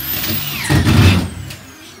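Electric screw gun spinning up with a high whine and driving a screw into fibre-cement floor sheet. It is loudest about a second in, then its motor winds down with a falling whine.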